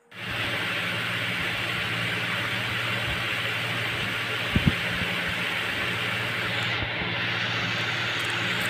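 Steady, fairly loud hissing noise with a low hum beneath it, starting suddenly just after the start, with two short thumps about halfway through.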